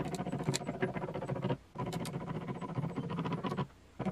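Glue-testing rig running: its wooden gear wheel turns the threaded screw with a steady mechanical whir and fast clicking, loading a glued wood sample. The sound stops briefly about one and a half seconds in and again just before the end.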